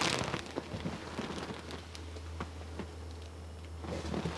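Quiet interior room tone: a steady low hum under a faint hiss, with a few soft scattered clicks.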